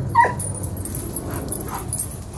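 Airedale terrier vocalizing during rough play with another dog: one short, sharp call that falls in pitch just after the start, then two fainter short calls in the second half.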